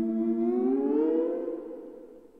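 Electronic music: a sustained synthesizer tone slides upward in pitch and fades away near the end.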